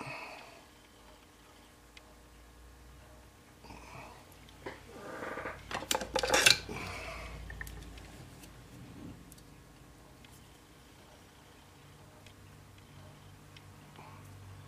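Small metal handling sounds of pliers gripping and twisting a bent clock arbor to work its lantern pinion off: a click right at the start, then a short run of rasping and sharp clicks about five to seven seconds in, and faint room sound otherwise.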